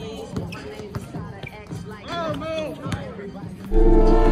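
A basketball bouncing on an outdoor court among voices, with a loud music beat coming in suddenly near the end.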